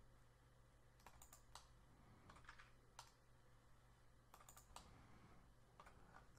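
Near silence with faint, scattered clicks of a computer mouse and keyboard, about nine over several seconds and some in quick pairs, over a low steady hum.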